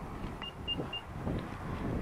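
Power liftgate's warning chime after its close button is pressed: three short, high beeps in quick succession, over faint low rustling.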